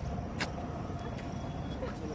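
Wind noise on a handheld phone's microphone: a steady low rumble, with one sharp click about half a second in.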